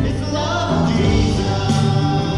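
A contemporary worship praise team performing: several voices singing together over strummed acoustic guitar and the band.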